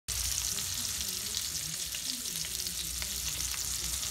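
Sausages sizzling in a frying pan: a steady hiss with scattered small crackles.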